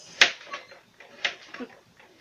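A metal frying pan and utensils handled on a gas cooker top: one sharp click near the start, then a few softer knocks and scrapes.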